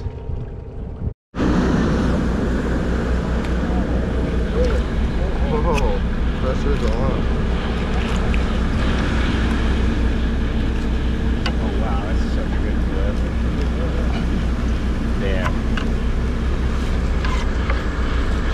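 Steady drone of a sport-fishing boat's engine under way, with indistinct chatter of people on deck; the sound cuts out briefly about a second in.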